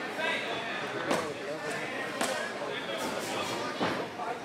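Spectators calling out and shouting, with four sharp smacks of boxing gloves landing punches spread roughly a second apart.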